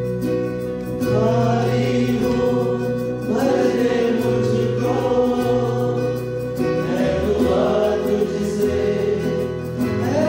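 A small mixed choir of men and women singing a hymn into microphones over a steady instrumental accompaniment; the voices come in about a second in.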